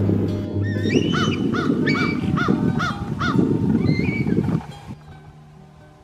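A bird calling in a quick series of about seven short, arched notes, roughly three a second, over background music; the sound drops away near the end.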